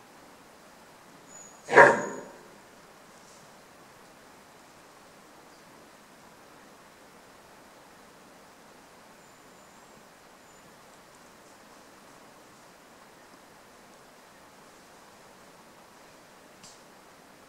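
A Fiordland wapiti bull gives one short, loud call about two seconds in; the rest is faint bush ambience.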